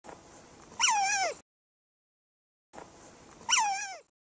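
Otters calling: two high, whining squeals with a wavering pitch that slides downward, about a second in and again near the end.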